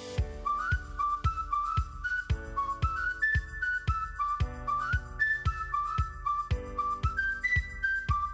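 Background music: a whistled melody with little slides into the notes over a steady beat of about two beats a second.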